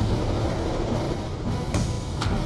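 Animated show's soundtrack playing: music under a steady, rushing low rumble of action sound effects, with a few sharp hits.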